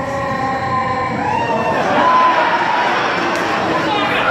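Audience cheering and whooping at a live show, growing louder about halfway through.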